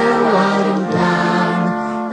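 A children's song in music: sung voices over instrumental backing, holding long notes that step to a new pitch about halfway through.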